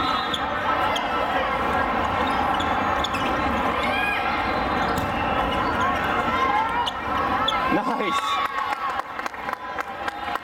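Volleyball game sound in a large, echoing hall: many overlapping voices of players and spectators, with sharp smacks of the ball being hit and scattered high squeals, typical of sneakers on the court.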